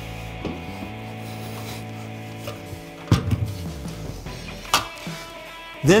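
Background music, with scraping and two knocks as radiators are lifted and set down on a tabletop, one about three seconds in and another near five seconds.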